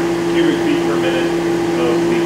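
Duct Blaster test fan running at a steady speed with a loud, even hum, holding the duct system at about 25 pascals while its leakage airflow is measured.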